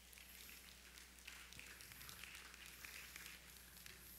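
Near silence: room tone with a low steady hum and faint, irregular rustling, such as clothing and footsteps of a man walking, picked up by his headset microphone.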